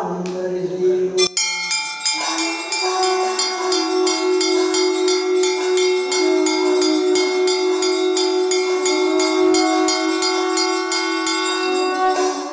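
Brass puja hand bell rung rapidly and without a break during the lamp-waving aarti, starting about a second in, over steady held tones.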